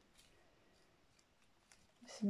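Near silence: room tone, with a couple of faint small ticks.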